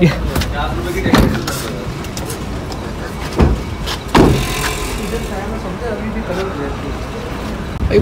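A car door handled and shut, with a few knocks and the loudest thump about four seconds in, over a low steady rumble and faint voices.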